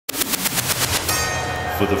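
Sound-design opener of a boxing-style jingle: a bell hammered in a fast run of strikes, about eight a second, for about a second, then ringing on as one held tone over a low pulsing beat.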